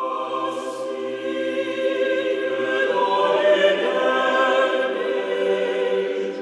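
Choral music: a choir singing sustained, held chords, growing a little louder toward the middle.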